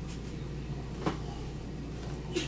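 Steady low hum of room tone with one short click about halfway through.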